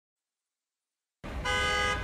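A single steady horn-like blast with several pitches, just under a second long, starting about a second in and cutting off suddenly.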